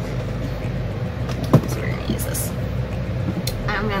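A steady low hum runs underneath, with a single sharp click about one and a half seconds in; a spoken word begins near the end.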